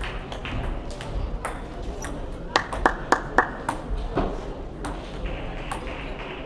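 Table tennis ball clicking off bats and table: a quick run of about five sharp clicks about halfway through, with fainter scattered clicks of play from other tables throughout.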